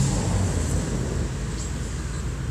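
Steady low rumble of background noise, with no distinct event.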